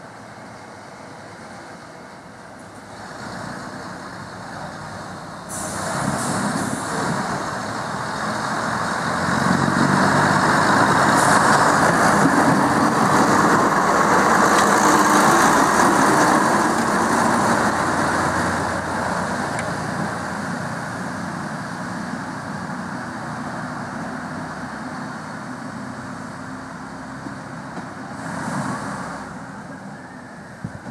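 Class 101 first-generation diesel multiple unit's underfloor diesel engines running under power as it pulls away. The sound grows louder from about a fifth of the way in, is loudest around the middle, then fades slowly as the unit draws off.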